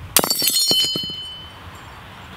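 A wine glass shattering as a stone block drops onto it on paving stones: one sharp crash, then glass shards clinking and ringing for about a second and fading away.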